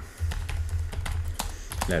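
Computer keyboard typing: a quick run of keystrokes as a word is typed, over a low steady hum.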